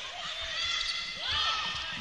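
Indoor court sounds of a volleyball rally: players' shoes squeaking on the court floor in several short rising-and-falling squeaks, over steady arena crowd noise.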